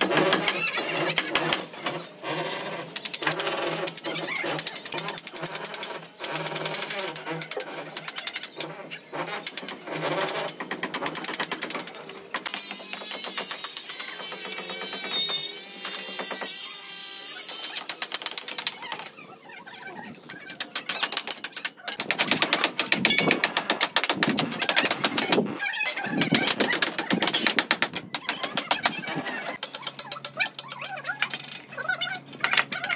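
Rapid clicking, tapping and clatter of steel scaffold tubes and wooden planks being handled and knocked into place while setting up formwork for a concrete floor. Voices come through at times.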